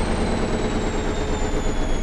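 Washing machine on its fast spin cycle: a loud, steady whirring noise with faint high whines slowly falling in pitch.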